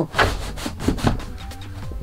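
Roof skylight's blackout blind being pulled shut by hand, sliding with a scraping rub. It is a bit sticky, dragging on the carpet lining of the ceiling.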